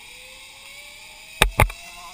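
Zipline trolley's pulleys running down the steel cable, a faint whine that climbs slowly in pitch as the rider picks up speed. Two sharp knocks about one and a half seconds in.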